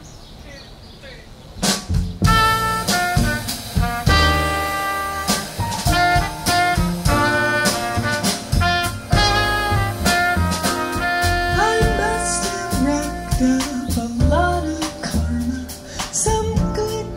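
A live jazz band starts a song about two seconds in with a drum-kit hit. A trumpet then plays the melody over bass and drums.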